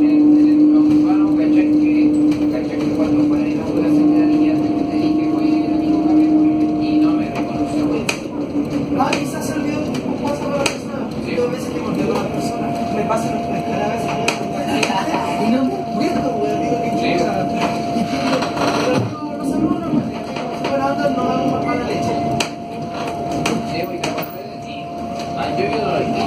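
Cabin of an Alstom Aptis battery-electric bus under way, its two rear-wheel hub traction motors giving a steady electric whine over road noise and cabin rattle: a low tone for the first third, then a higher one from about half-way. Occasional knocks from the body.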